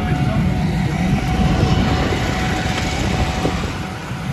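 Ride inside an open-sided auto-rickshaw: its small engine running with a steady low rumble, mixed with road and wind noise.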